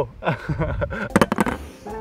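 A man laughing, with wind rumbling on the microphone.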